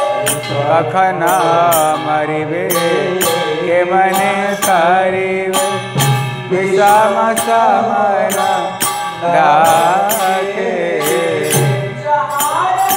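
Devotional chanting (kirtan): a voice sings a melody that glides and wavers, over a sustained low accompaniment. Sharp metallic percussion strikes keep time throughout.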